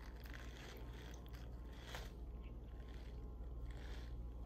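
Faint eating sounds: a fork scraping and clicking in a plastic food container while noodles are chewed, a few soft clicks spread through, over a steady low hum.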